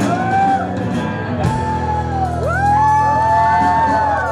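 Live rock band playing the last bars of a song: electric guitar bending and sustaining notes over a held low bass note, with one drum hit about one and a half seconds in.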